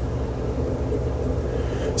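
Steady low hum and rumble of fish-room equipment, such as air pumps and filtration, running without change.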